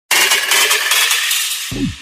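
A bright, hissing, flickering intro sound effect that lasts about a second and a half and slowly fades. Near the end, music starts with a falling low tone.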